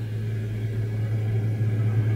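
Steady low electronic hum with a faint hiss, the constant background drone of an old recording of a 'direct voice', heard here in a gap between spoken sentences.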